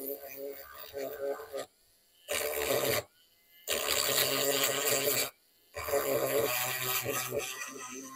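Small cordless rotary grinding tool with a disc bit rasping against the metal shield plate on the back of an iPhone 14 display panel, grinding it down. It runs in spells and cuts out abruptly three times for under a second each.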